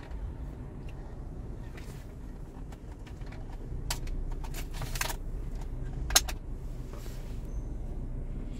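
Scattered sharp clicks and handling noises from a ThinkPad laptop's CD drive as the disc is taken out, the loudest click about six seconds in. A low steady rumble runs under it.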